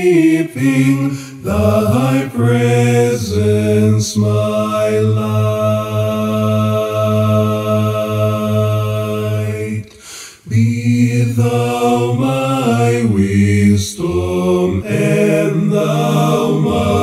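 A cappella male vocal harmony: one singer multitracked in four parts singing a slow hymn, with a long held chord in the middle and a brief pause about ten seconds in.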